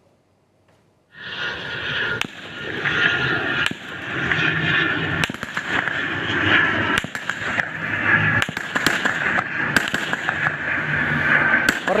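After about a second of near silence, a long run of rapid gunshots begins, many sharp cracks in quick succession. Under them runs the steady drone of a low-flying propeller plane, the logistics aircraft being fired at as it passes overhead.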